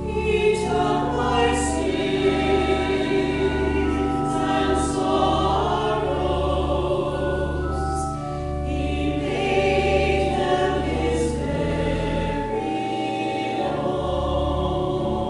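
Church choir singing a hymn in harmony, with held organ notes underneath.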